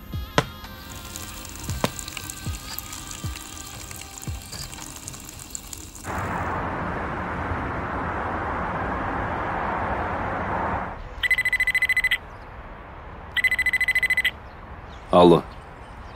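A telephone ringing twice, two electronic trilling rings of about a second each, after a stretch of soft background music and a steady rushing noise; a man's voice comes in just before the end.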